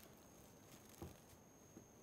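Near silence: room tone with a faint steady high whine, and one faint short click about halfway through.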